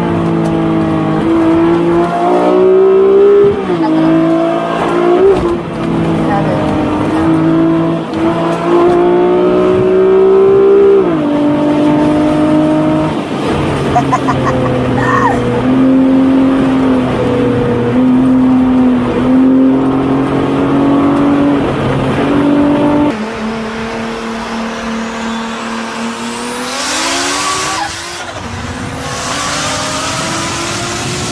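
Car engine pulling hard under acceleration, its pitch climbing and then stepping down at each gear change. Later, another car's engine rises in pitch and passes with a rush of noise.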